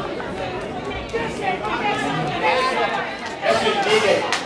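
Several people talking at once in a large hall: overlapping, indistinct voices, getting louder near the end.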